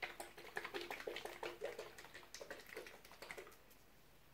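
Faint, quick light clicks and taps, several a second, from a plastic paint bottle being handled. They die away about three and a half seconds in.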